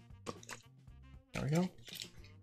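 Thin plastic label being torn off a plastic water bottle, with a couple of short crinkling crackles in the first half-second, under quiet background music.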